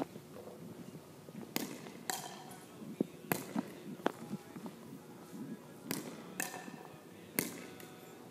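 Wooden pickleball paddle hitting a hollow plastic pickleball, with the ball bouncing on a hardwood gym floor: about six sharp knocks, some in pairs half a second apart, each ringing briefly in the gymnasium's echo.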